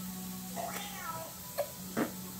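A house cat meowing once, a single call under a second long that falls in pitch, followed by a short click.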